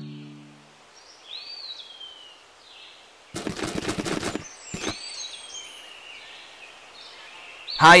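Woodland ambience of birds calling in arching, whistled notes. About three seconds in there is a burst of rapid crackling clicks lasting about a second, with one more click just after. Guitar music fades out at the very start.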